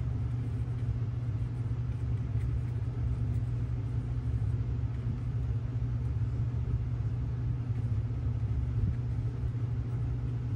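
Steady low hum of background noise, even and unchanging, with no distinct events.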